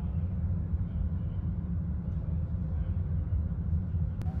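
Steady low rumble of indoor background noise inside a large hangar, with no distinct events.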